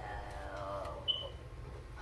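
A man's drawn-out "well..." trailing off and falling in pitch, then low room noise with one brief high squeak about a second in.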